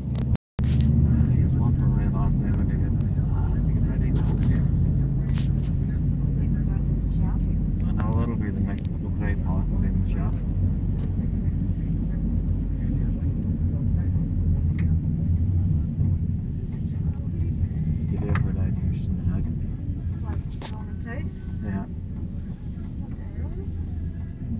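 Steady low rumble of engine and tyre noise inside a moving car's cabin, with voices talking faintly in the background. The rumble grows a little quieter in the last few seconds.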